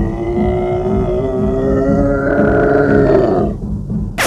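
Film soundtrack: a long, loud roaring tone that rises slightly in pitch, held over a steady pounding low drum beat. It cuts off about three and a half seconds in.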